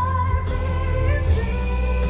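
A female pop singer singing live with band backing. A high held note ends just after the start, and she carries on in a lower register over a steady bass.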